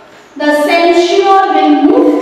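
A woman's voice speaking in long, drawn-out tones, starting after a brief pause at the start.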